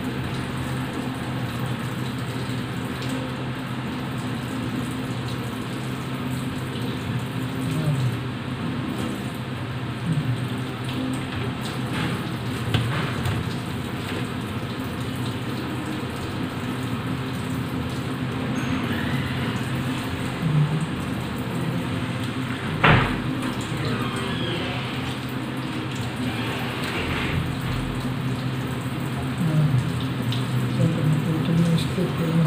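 Hands cleaning raw squid over stainless-steel colanders: faint wet handling with a few brief clicks, the sharpest about two-thirds of the way in, over a steady low hum.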